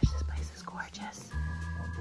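Soft whispering, with a sharp click right at the start. About a second and a half in, a held organ-like chord of several steady notes comes in, over a low rumble.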